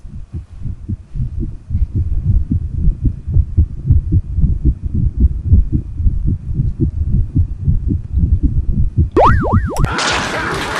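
Deep, rapid throbbing pulses like a pounding heartbeat on the soundtrack, growing louder over the first two seconds. Near the end a few sweeping tones arc up and down.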